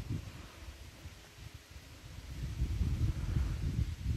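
Low, uneven rumble of wind buffeting the microphone, dipping about a second in and building up again in the second half.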